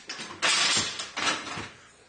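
Aluminum loading ramp scraping and rattling as it is slid and moved by hand: a loud scrape about half a second in, then a weaker one that fades.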